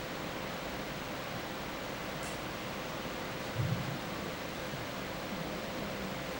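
Steady background hiss of a hall's room noise, with a faint hum, and a brief low murmur of a voice about three and a half seconds in.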